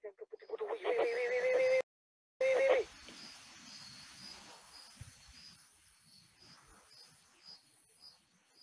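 A long, steady-pitched, voice-like cry lasting about a second, which cuts off abruptly. A shorter cry that drops in pitch follows about half a second later. After that come faint insects chirping in a regular rhythm of about two a second.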